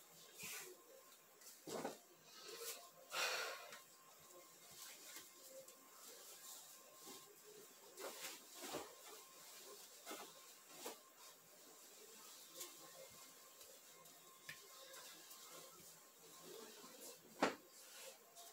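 Faint rustling of bedding and clothes being handled and folded, in short swishes with a few brief knocks, the sharpest near the end, over a quiet room.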